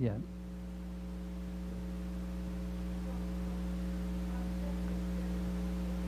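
Steady electrical mains hum in the recording: a low, unchanging buzz made of several held pitches over a faint hiss.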